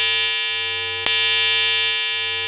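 A held, buzzy synthesizer tone with many overtones, alone in a break of an electronic track where the drums drop out; it fades slightly and restarts with a click about a second in.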